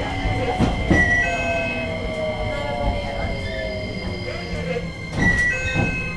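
JR Kyushu 815 series electric train running, heard from the cab: a motor whine falls slowly in pitch over a steady rumble, with a few sharp clicks. Short high electronic beeps sound about a second in and again near the end.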